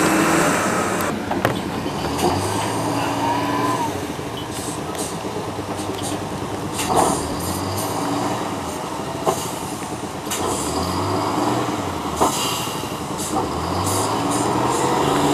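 Diesel engine of a crawler-mounted cable yarder working, its note rising and falling every few seconds with the load, over a hiss of machine noise. Several sharp metallic clanks come a few seconds apart, and there is a brief squeal early on.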